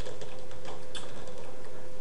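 Computer keyboard keys clicking: several soft key presses as a Ctrl + Up arrow shortcut is typed, over a steady low electrical hum.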